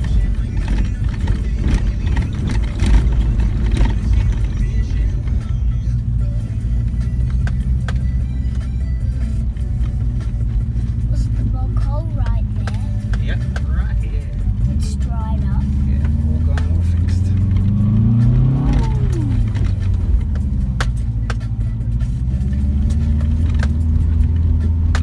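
2004 Subaru Forester's flat-four engine heard from inside the cabin, pulling under load up a rough dirt track, with rattles and knocks from the car over the bumps. About three-quarters of the way through, the engine note climbs and then drops away sharply.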